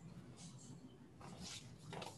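Near silence: faint room tone with a few soft, brief sounds.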